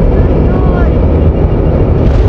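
Heavy, steady wind rumble on the microphone mixed with the running noise of the vehicle carrying the camera along the road, with a voice faintly heard under it about half a second in.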